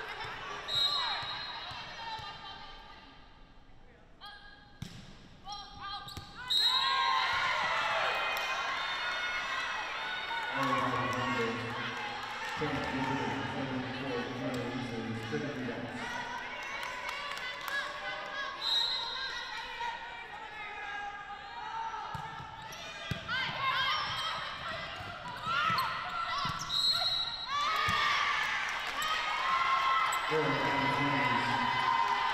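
Volleyball rally sounds in a large gym: players' shouts and calls, with sharp thuds of the ball being hit and bouncing on the hardwood floor.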